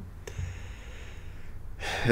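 A man's long intake of breath, lasting about a second and a half, preceded by a small mouth click.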